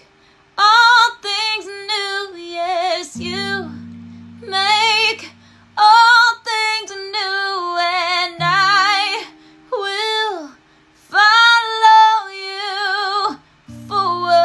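A woman singing in long, ornamented phrases with strong vibrato, over acoustic guitar chords that are struck and left to ring, about three seconds in and again past eight seconds.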